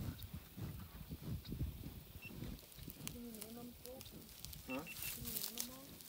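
American bison close up, snuffling and moving in the grass with scattered small clicks, and a few short wavering calls about halfway through and again near the end.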